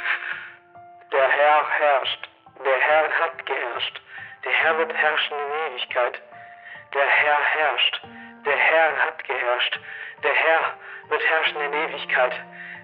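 A voice made to sound like a garbled radio transmission, heard in short phrases of about a second each with wavering pitch, too distorted to make out words. Music with long held tones runs underneath.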